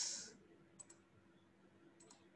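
Two faint computer mouse clicks close together about a second in, after a man's voice trails off at the start; otherwise near silence.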